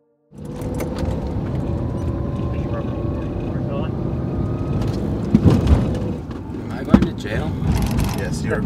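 Car driving, heard from inside the cabin: a steady rumble of engine and road noise that cuts in suddenly, with the engine note rising slowly as the car picks up speed. A couple of sharp knocks come late on.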